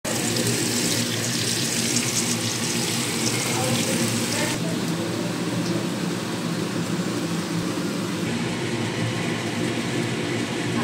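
Potato wedges sizzling in hot oil in a wok, a steady hiss that cuts off abruptly about four and a half seconds in, over a steady low hum that runs throughout.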